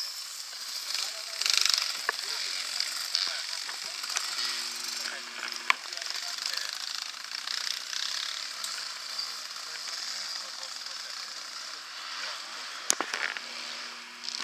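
Dirt bike engines running and revving as riders pass on the course, a steady buzzing that rises and falls, with a few sharp clicks.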